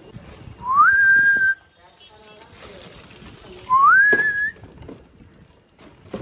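A clear whistle, sounded twice about three seconds apart: each note slides up and then holds one high pitch for about a second.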